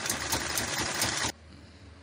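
Sewing machine stitching a seam at speed, a fast even run of needle strokes that stops abruptly a little over a second in.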